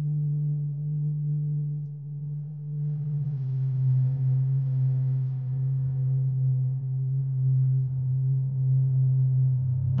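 Background film score: a sustained low synthesizer drone that moves to a lower chord about three seconds in and is held.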